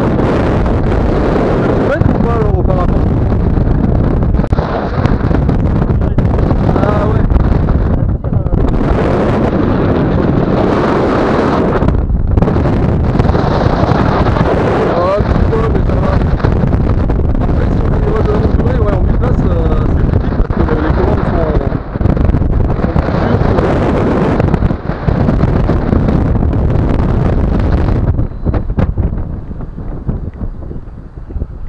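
Airflow buffeting the camera microphone in flight under a tandem paraglider: a loud, steady rush with brief dips in level, easing somewhat near the end.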